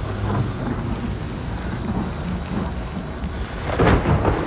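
Designed storm ambience: a steady, low wind rumble, broken by one loud sudden hit near the end.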